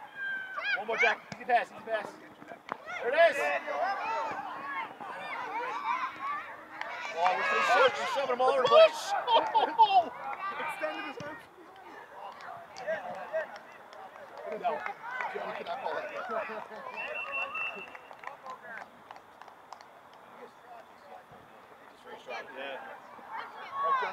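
Voices of spectators and coaches shouting and calling out along the sidelines of a youth soccer game, overlapping and loudest in a burst in the middle, then dying down toward the end.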